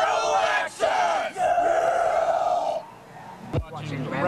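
A small group of young people yelling together, ending in one long held shout that breaks off about three seconds in.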